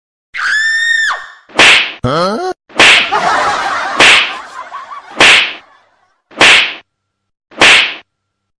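Cartoon-style comedy sound effects: a sharp whip-like crack repeating evenly about once every 1.2 seconds, with a whistle tone near the start, a quick rising warble around two seconds in, and a hiss lasting a couple of seconds after it.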